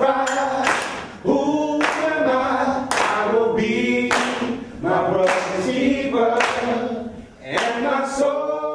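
A small group of men singing together a cappella, with hand claps keeping the beat about once a second.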